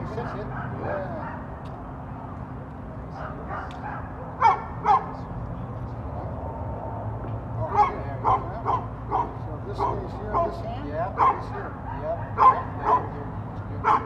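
A dog barking in short, sharp barks: two close together about four and a half seconds in, then a run of about ten more at roughly two a second from about eight seconds on.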